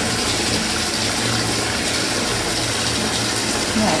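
Bath tap running, a steady stream of water pouring into a filling bathtub.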